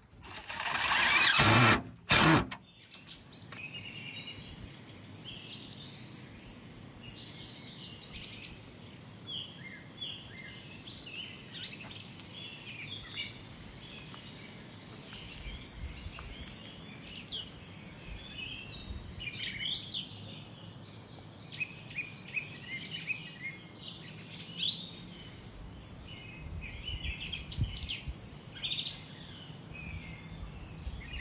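A cordless DeWalt driver runs in two loud bursts over the first two seconds or so, driving a screw through a metal mounting plate under a railing. Birds then sing and chirp for the rest of the time, over a steady outdoor background.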